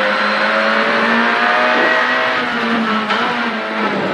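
Renault Clio R3C rally car's 2.0-litre four-cylinder engine running hard at high revs, heard from inside the cabin together with road noise. The engine note climbs slightly, then eases off in the second half.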